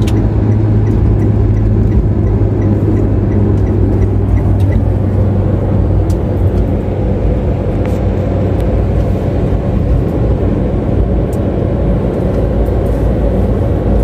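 Steady road and engine noise inside a car's cabin while cruising on an asphalt highway, a continuous low drone with no sudden events.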